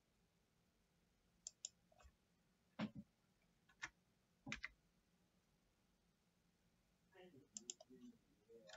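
Scattered sharp clicks from a computer mouse and keyboard, several in quick pairs, with a pause of a couple of seconds in the middle, over a near-silent room.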